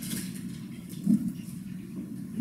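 Steady low room hum with faint taps of typing on a laptop keyboard, and one brief louder low sound about a second in.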